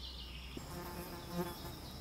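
A flying insect buzzing faintly, a steady low buzz lasting about a second.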